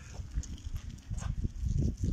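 Wind buffeting the phone's microphone: an irregular low rumble that grows louder about halfway through.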